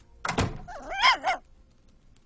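Cabin door shutting with a single thunk about a quarter of a second in, followed about a second in by a short wavering vocal call.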